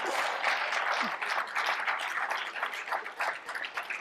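Audience applauding, many people clapping at once in response to a joke, thinning out near the end.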